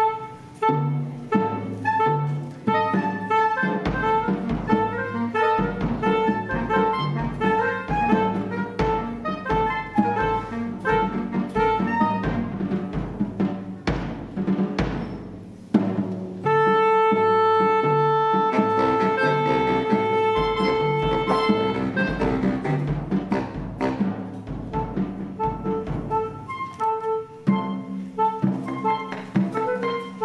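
Saxophone quartet (soprano, alto, tenor and baritone) with drum kit playing a percussive contemporary piece: short, repeated staccato notes over a steady low pulse, broken by one long held note in the middle before the choppy figures return.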